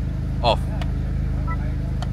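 Honda Civic Type R FL5's turbocharged 2.0-litre four-cylinder idling steadily in neutral, heard from inside the cabin. A brief soft electronic chime from the dash sounds about one and a half seconds in, as traction control is switched.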